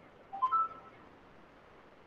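A short electronic chime of three rising notes, the last held slightly longer, about half a second in: a computer or video-call notification tone.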